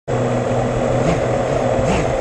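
Racing quadcopter's brushless motors and propellers spinning at idle while it rests on the ground, a steady hum with brief little rises in pitch about a second in and near the end.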